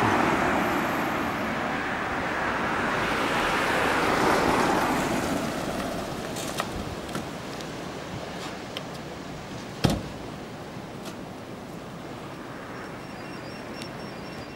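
A car drives along the road past the microphone. Its engine and tyre noise swells to a peak about four seconds in and then fades away. A steady hush follows, broken by a few light clicks and one sharp knock about ten seconds in.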